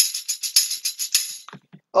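Instrumental tail of a recorded children's chant: a tambourine-like jingle keeping a quick, steady beat, about eight strikes a second, which stops about one and a half seconds in.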